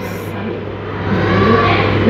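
A child's voice drawing out a sound as he starts to read aloud, beginning about a second and a half in, over a steady low hum.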